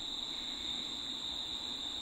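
Faint steady background hiss with a continuous high-pitched whine or chirr running through it, unchanged throughout; no splashing or other events.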